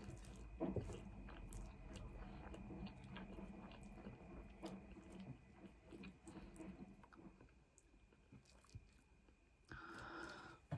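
Quiet close-up chewing of a mouthful of chicken curry, rice and chips, with small clicks and scrapes of a wooden spoon against the plate as more food is scooped up; the sounds die down in the last few seconds.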